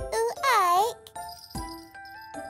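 A baby character's wordless babbling: two short cooing sounds, the second swooping down and back up in pitch, over gentle children's background music with tinkling notes.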